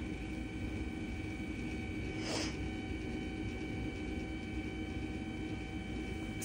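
Electric winch motor on a hitch-mounted cargo carrier running steadily with a constant hum and whine. A brief soft hiss comes about two seconds in.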